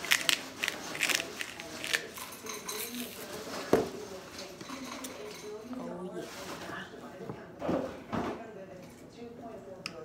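Hand-turned pepper mill grinding in a quick run of short clicks, then a plate and fork clinking and knocking.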